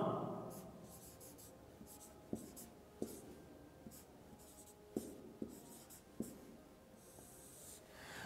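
Marker pen writing on a whiteboard: a handful of short, faint strokes spread over a few seconds as a word is written.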